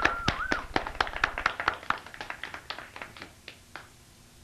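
A small audience clapping in welcome. The claps thin out, grow fainter and stop near the end.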